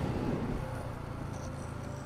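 Motorcycle riding at low speed: a quiet, low, steady engine hum with a faint steady tone above it.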